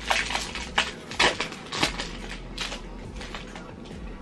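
Foil wrapper of a Yu-Gi-Oh booster pack crinkling and crackling in the hands as it is torn open, loudest in the first two seconds.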